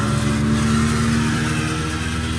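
An engine running steadily at idle, an even low hum that does not change pitch.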